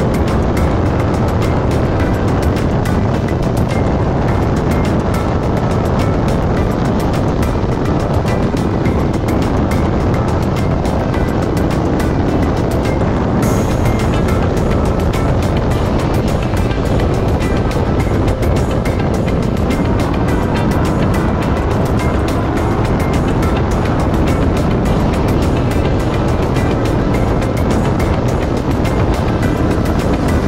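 Background music mixed with the steady running of an off-road race car's engine and its tyres on a dirt track, heard onboard.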